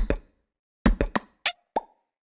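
Logo sting sound effect: five short, sharp pops in quick succession after a moment of silence, the last ones leaving a brief ringing note.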